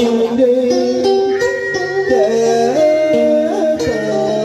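A man's voice chanting a slow, drawn-out melody into a microphone through a loudspeaker, with held notes that slide from one pitch to the next, over instrumental accompaniment.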